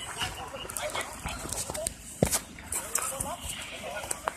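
Several people talking indistinctly in the background, over irregular knocks and scuffs of footsteps and a hand-held phone camera being moved, with one sharp knock a little past halfway.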